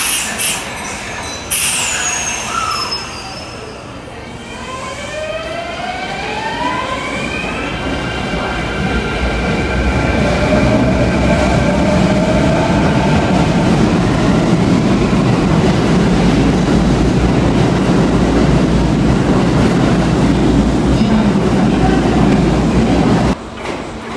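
Kintetsu electric commuter train pulling out of an underground station: its inverter motors whine in several tones that climb together and then level off, under a rumble of wheels that grows louder and holds as the train gathers speed. The sound drops suddenly just before the end.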